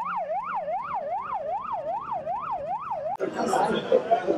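Ambulance siren sounding a fast rising-and-falling wail, about two and a half sweeps a second. It stops abruptly a little after three seconds in, giving way to voices talking.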